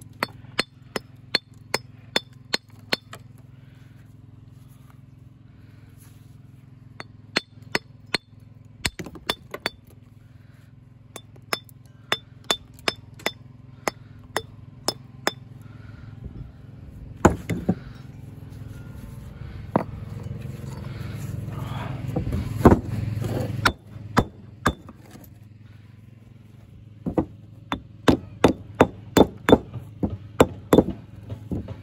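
Steel walling hammer striking and chipping Cotswold limestone, dressing pieces to shape, in runs of sharp, ringing strikes at about two to three a second. A steady low hum runs underneath, and a louder rushing noise builds from about halfway and cuts off suddenly.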